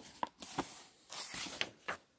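Paper pages of a softcover manual being turned by hand: a handful of short rustles and flicks.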